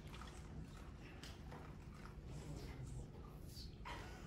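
Quiet lecture-hall room tone: a steady low hum with scattered faint taps and clicks.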